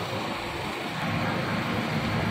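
Steady city street traffic noise, an even wash of sound with no distinct events.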